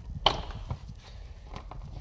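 Plastic engine cover on a VW 2.0 engine being pulled at by hand. There is a sharp plastic knock about a quarter second in, then a few lighter clicks.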